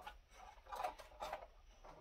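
Faint rubbing and a few light clicks of hands handling parts inside an open rack server chassis.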